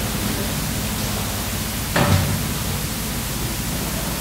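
Steady, even hiss of background and recording noise, with one short sound about two seconds in.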